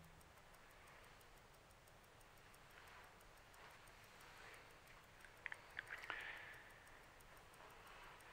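Near silence: faint room tone, with a few faint short clicks about five to six seconds in.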